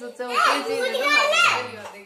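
A toddler's voice babbling and calling out, mixed with other voices.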